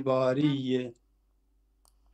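Speech: a voice holding a long drawn-out vowel for about a second, then a pause with a faint click near the end.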